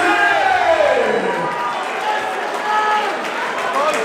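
A ring announcer speaking into a microphone, his words drawn out long, one sliding down in pitch about a second in, over steady crowd noise.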